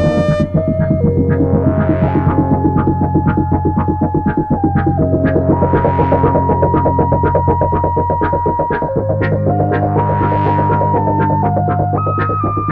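Moog synthesiser music: a throbbing low bass drone under a slow lead line of held notes that step up and down, with a light regular tick. The bass shifts to a higher note about nine seconds in.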